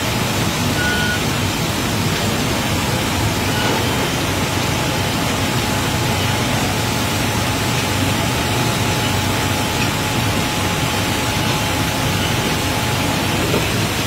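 Steady loud rushing noise of aircraft ground operations, from the parked airliner and its cargo loader, with a low hum underneath and a faint steady whine through most of it.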